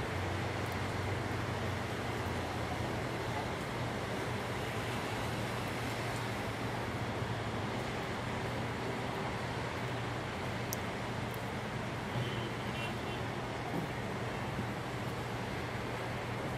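Heavy rain falling in a steady hiss, with a low hum of road traffic underneath.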